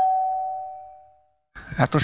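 Two-tone ding-dong doorbell chime ringing out and fading away over about a second, the sign of a visitor at the door.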